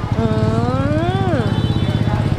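A woman's long, wordless "mmm" of relish as she tastes a piece of durian. It rises and then falls in pitch and lasts about a second and a half. A steady low, engine-like drone runs underneath.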